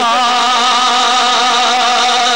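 A man's voice holding one long sung note with a slight vibrato, in a Punjabi devotional song.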